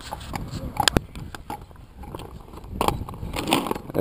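Inline skate wheels rolling and scraping over rough asphalt, with a sharp knock about a second in.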